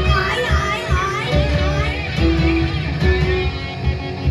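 Live rock band playing, with guitar, bass and drums, and wavering high notes sung or played over it in the first second and a half.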